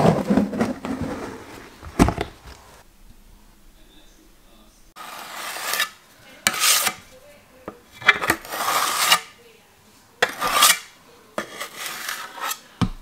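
A plastic bucket lid is handled with a brief rustle and a click, then a steel broad knife scrapes plaster filler against a metal hawk in about four separate strokes in the second half.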